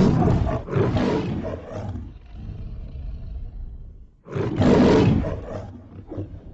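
A loud, rough roar in repeated bursts. Two long bursts come near the start, then a weaker stretch, then another strong burst about four seconds in.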